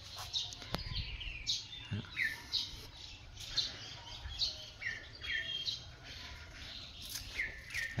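Small birds chirping: short, high chirps, each falling in pitch, repeated irregularly about twice a second.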